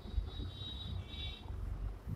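Faint low rumble in the background, with a faint high-pitched whine through the first part.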